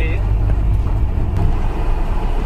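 Off-road 4x4 engine and drivetrain, a steady low rumble heard from inside the vehicle as it crawls slowly over a rocky, wet stream-bed track.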